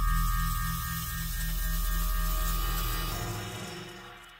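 Star Trek–style transporter beam sound effect: a shimmering high hiss over a steady ringing tone and a low hum pulsing about four times a second. It swells in and fades away near the end.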